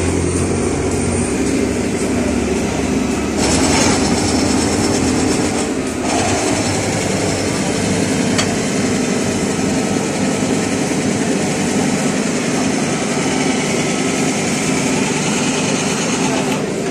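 Steady drone of running machinery. A low hum drops away about two seconds in, and a hissier stretch comes between about three and six seconds.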